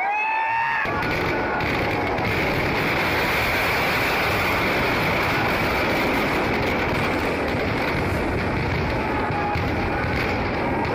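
Fireworks packed inside a burning Dussehra effigy going off in a dense, continuous crackle from about a second in, after a few rising and falling whistles at the start.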